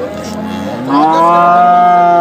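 Young long-haired brown heifer mooing close to the microphone: one long, loud call that swells up under a second in and then holds a steady pitch.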